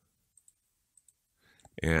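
A few faint, sharp computer mouse clicks as an object is selected on screen.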